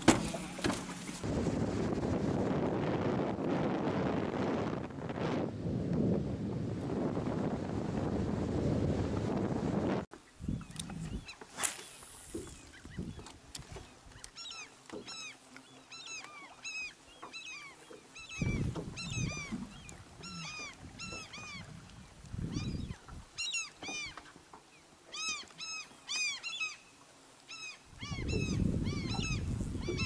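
A loud, steady rush of wind and water from a motorboat under way for about ten seconds. It then cuts to a quieter stretch where birds call over and over with short, arching cries, broken by a few low rumbles.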